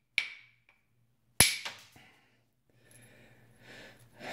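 Copper bopper striking the edge of a Flint Ridge flint preform twice, about a second apart, knocking off small flakes; each blow is a sharp crack with a brief ring, the second louder.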